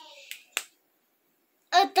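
Two brief sharp clicks about a quarter-second apart, the second louder, then about a second of dead silence before a woman's voice comes back in.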